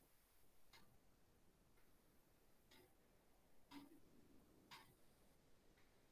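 Near silence with faint, short clicks about once a second.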